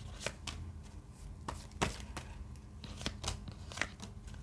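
Tarot cards being dealt and laid down on a tabletop: a series of sharp, irregular card snaps and taps, about eight in four seconds.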